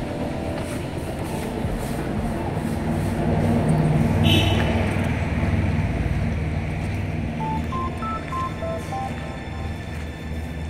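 Steady low outdoor rumble of background noise. Near the end comes a quick run of about six short electronic beeps at different pitches, a little tune.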